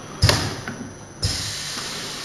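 Pneumatic two-head bottle filling machine cycling: two sharp thumps about a second apart, the second followed by a steady hiss.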